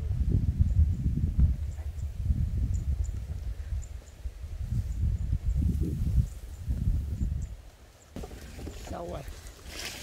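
Wind buffeting the microphone: a gusty low rumble that swells and fades, cutting off abruptly about eight seconds in.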